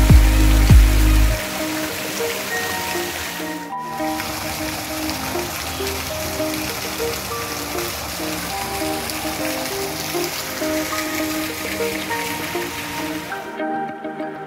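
Water from a wall fountain spilling down its face and splashing into the pool below, an even hiss heard under background music. The water sound cuts off suddenly just before the end; the music's heavy bass drops out about a second in.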